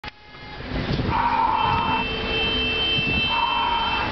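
Sheep bleating twice, each call held about a second, over the low rumble of street traffic.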